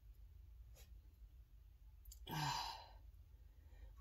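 A woman sighing once: a single breathy exhale lasting under a second, a little after two seconds in, over quiet room tone.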